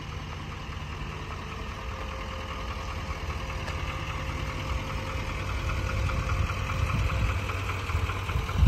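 Duramax turbodiesel V8 of a GMC Sierra 3500 Denali HD idling with a steady diesel clatter, growing gradually louder over the few seconds.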